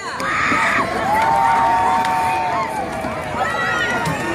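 Stadium crowd cheering and shouting, with many voices overlapping; about a second in, one voice holds a long call for a second and a half.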